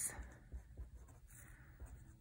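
Faint sound of a pen writing on a paper workbook page.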